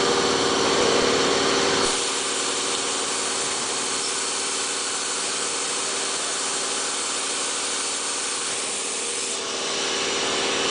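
Automated foil cutting and separation machine running: a steady hum with an even hiss over it. The sound shifts about two seconds in, losing some of its low end, and changes back near the end.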